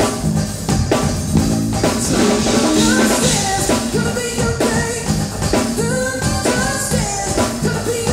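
A three-piece band playing: male lead vocals over a Korg keyboard, electric bass and drum kit, the singing coming in about three seconds in.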